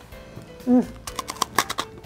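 Crunching bites into crisp, pan-toasted whole-wheat bread bruschetta: a quick run of sharp crackles about a second in, lasting most of a second. A short 'mm' comes just before the crunching.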